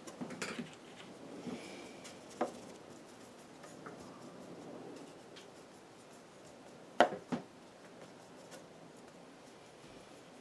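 Quiet handling sounds of watercolour painting: a faint brushing scratch and a few sharp taps, as of a brush worked on paper and tapped against a palette or water pot. The loudest is a pair of taps about seven seconds in.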